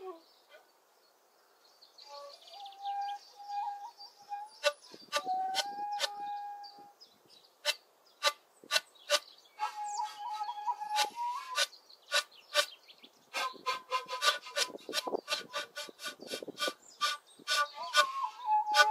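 Two shakuhachi (Japanese bamboo end-blown flutes) improvising together, starting about two seconds in: breathy held notes and short bent phrases, broken by many sharp percussive breath attacks that come thickest in the second half.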